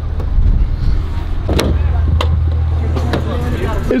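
Car door being opened and someone climbing into the seat: a few sharp clicks from the handle and latch over a steady low rumble.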